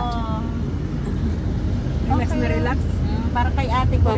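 Steady low road and engine rumble inside the cabin of a moving GMC SUV, with voices over it.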